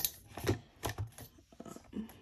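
A few light, separate clicks and taps from handling a cardboard box and a box cutter as the box is being opened.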